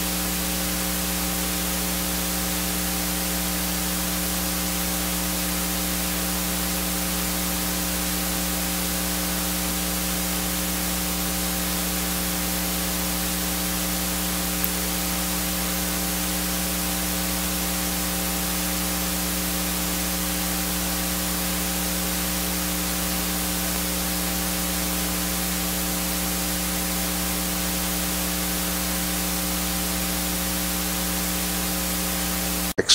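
Steady hiss with a constant electrical hum of several fixed tones, unchanging throughout: the noise floor of the audio feed.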